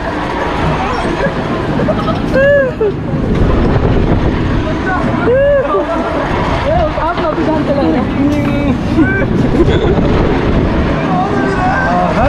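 Riders on a moving amusement-park ride shouting and laughing. There are rising-and-falling whoops about two and a half and five and a half seconds in, and shorter excited cries after that, over a steady low rumble.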